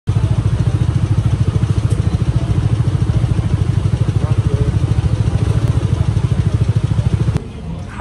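Motorcycle engine idling close by, a loud, low, fast and even throb that cuts off abruptly near the end, with a faint voice under it.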